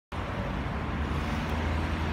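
Road traffic: cars driving along the street, a steady wash of engine and tyre noise with a low rumble.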